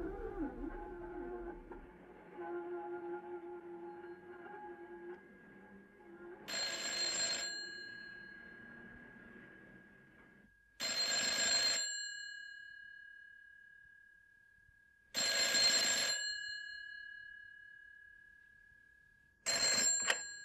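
A telephone bell rings four times, about every four seconds, each ring lasting about a second, with a steady ringing tone carrying on between rings: an incoming call. The fourth ring starts near the end.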